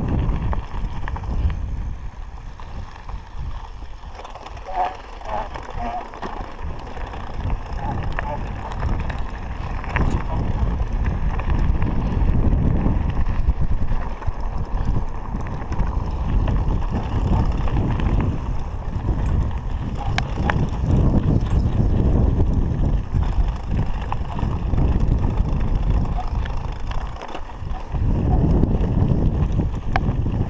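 Mountain bike (a 29er) rolling over a gravel dirt road: a steady rumble of tyres and rattle from the bike, with wind buffeting the microphone in uneven gusts and scattered clicks. It is quieter for a few seconds near the start and louder from about halfway.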